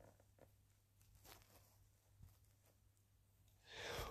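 Near silence: faint room tone, with a soft noise rising just before the end.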